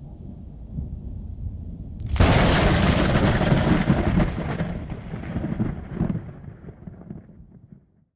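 A thunder-like boom sound effect: a low rumble swells, then a sudden loud crack about two seconds in rolls on and fades away over several seconds.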